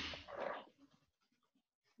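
A brief scratchy rustle lasting about half a second, then near silence.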